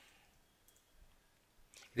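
A few faint computer keyboard key clicks, spaced apart, as the last letters of a command are typed and Enter is pressed.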